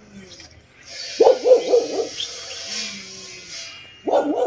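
A dog barking a few times, starting about a second in, with a weaker call near the end.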